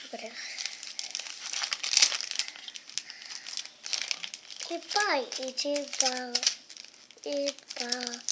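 Small plastic candy-kit packet crinkling as a child's hands handle and open it, a dense run of rustling through the first half. A child's voice sounds in the second half.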